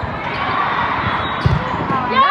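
Indoor volleyball rally: a steady din of voices in the gym, with a few dull thuds from play on the court about one and a half seconds in.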